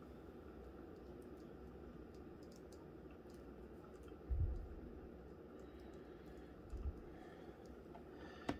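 Quiet room tone with faint scattered clicks and a soft low bump about four seconds in, and a smaller one near seven seconds: small handling noises made off camera.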